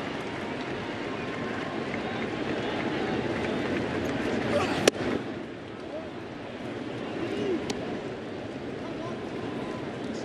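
Stadium crowd murmuring steadily, with a single sharp pop about five seconds in: a pitched baseball smacking into the catcher's mitt.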